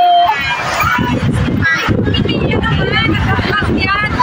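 Several women talking at once in lively overlapping chatter; a voice holding a high drawn-out note breaks off just after the start.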